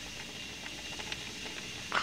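Steady hiss of background recording noise, with a few faint clicks, after the guitar has stopped. Near the end comes a brief louder blip.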